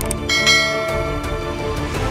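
Background music with a sound-effect click and then a short bright bell chime about half a second in, fading quickly: a notification-bell effect for an animated subscribe button.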